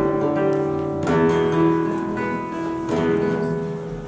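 Flamenco guitar playing the opening chords of a soleá: three strummed chords, at the start, about a second in and near three seconds, each left to ring and fade.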